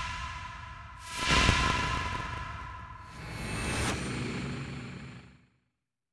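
Outro whoosh sound effects swelling and dying away over a held tone, the loudest about a second in and another just before the four-second mark, fading out shortly before the end.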